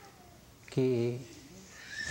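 A man's voice saying a single short, drawn-out word between pauses in his speech.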